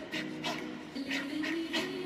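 Short, sharp hissing exhales from a boxer, about five in two seconds at an uneven pace, one with each shadowboxing punch, over background music holding a low chord.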